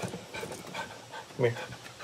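A yellow retriever panting softly, with a short spoken call about one and a half seconds in.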